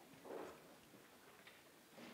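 Near silence: room tone with a few faint ticks and a brief soft sound about a third of a second in.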